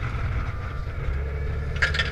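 Wind buffeting the microphone over a deep, steady rumble from a boat underway in high winds, with one sharp knock near the end.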